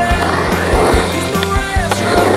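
Skateboard wheels rolling on a concrete bowl, a rushing sound that swells as the board carves across it, under music with a steady beat.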